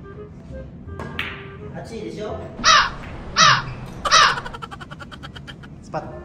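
Three loud shouts a little under a second apart, followed by a burst of rapid laughter; a sharp click sounds about a second in.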